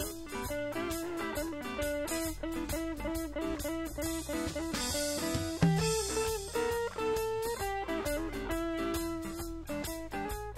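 Live blues band playing an instrumental stretch: electric guitars over bass guitar and drums, with a cymbal crash about five seconds in.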